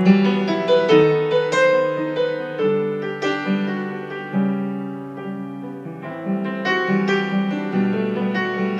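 Yamaha grand piano played solo with both hands: a melody over held chords and bass notes, with a steady flow of freshly struck notes.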